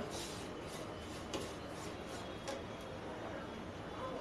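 Wooden spatula stirring a dry, crumbly khoya and coconut mixture in a nonstick frying pan: soft scraping with a couple of light taps, over a steady faint hiss.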